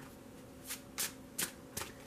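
Tarot deck being shuffled by hand: four soft card snaps about a third of a second apart.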